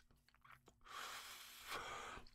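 A faint, long breath starting about a second in and lasting a little over a second.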